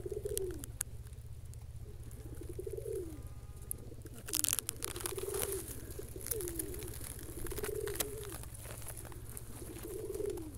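A dove cooing repeatedly: a series of short coos, each rising and then falling in pitch, about one every one to two seconds. Occasional sharp clicks and rustles close by, the loudest about four and a half seconds in.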